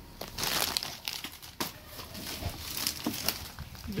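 USPS Priority Mail mailer envelopes crinkling and rustling in uneven bursts as they are handled and sorted, with a sharp tap about a second and a half in.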